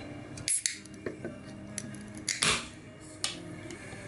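A metal spoon prying under the stuck ring-pull tab of an aluminium drink can: a series of sharp metallic clicks and scrapes, with a louder rasping burst about halfway through.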